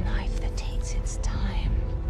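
A woman whispering words the transcript did not catch, with sharp breathy 's' sounds, over a low, steady film-score drone.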